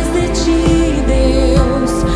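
Live Christian worship music: a band playing sustained chords over a steady bass, with a wavering sung melody on top.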